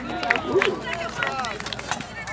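Voices of spectators calling out and chattering over one another, with scattered sharp clicks and knocks among them.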